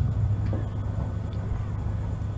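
A steady low hum with a faint murmur of a large outdoor crowd underneath, heard in a pause between the preacher's phrases.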